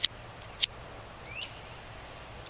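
A small bird chirping: two short, sharp chirps in the first second, then a fainter upward-sliding chirp, over a faint steady outdoor background.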